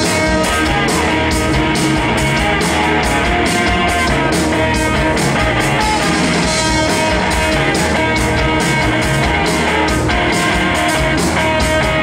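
Live rock band playing an instrumental passage without vocals: electric guitars and bass guitar over a steady drum beat.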